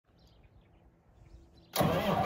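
Near quiet with a few faint chirps, then near the end a John Deere 8330 tractor's diesel engine suddenly starts cranking on its starter, loud and pulsing.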